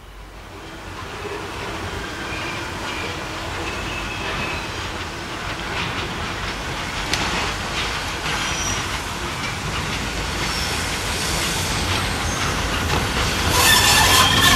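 Saddle-tank steam locomotive and its goods wagons approaching and growing steadily louder, with short high squeals from the wheels on the curve over the running rumble.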